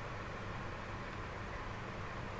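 Steady background hiss with a low hum and no distinct events: the room tone of a desk microphone between spoken lines.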